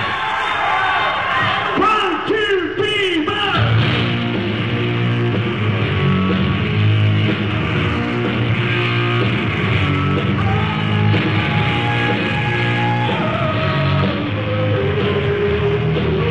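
Live rock band with distorted electric guitars and bass kicking into a song about three and a half seconds in, after a few seconds of yelling and cheering. It is a muffled, lo-fi audience recording made from the floor of the club.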